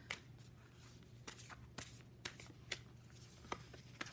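A deck of tarot cards being shuffled by hand: quiet, separate card snaps about every half second.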